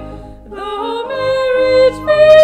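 A hymn sung by a single voice with vibrato over instrumental accompaniment. About half a second in the voice breaks off briefly for a breath, then slides up into a new held note.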